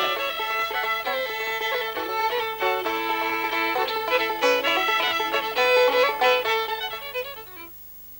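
Instrumental close of a country song, a fiddle leading with a quick melody over the backing, fading away near the end.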